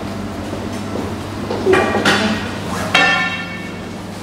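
Two sharp, ringing strikes about a second apart, each dying away, over a steady low hum.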